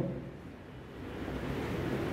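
A brief pause in a man's speech: his voice trails off at the start, leaving faint, steady background noise that swells slightly after about a second.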